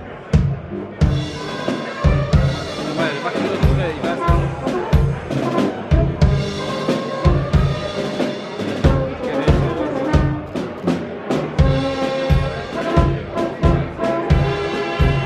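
Brass band music with a steady bass-drum beat, about two beats a second, under brass playing a tune.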